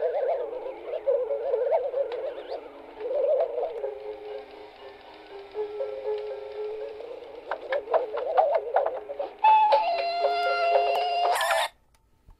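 Electronic music: wavering, warbling pitched tones, then a run of sharp clicks. Near the end a held stack of steady tones comes in and cuts off suddenly as the track ends.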